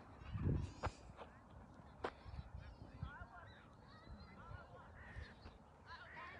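Geese honking in a string of short calls through the second half. A low thump about half a second in is the loudest moment, and there are a couple of sharp clicks in the first two seconds.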